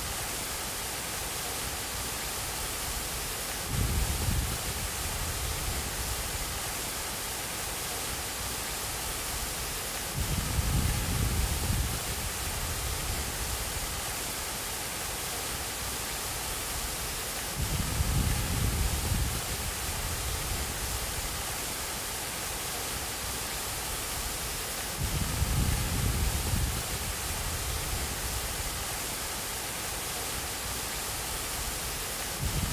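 Steady rushing of fountain water, broken by four low rumbles about seven seconds apart, each lasting a second or two.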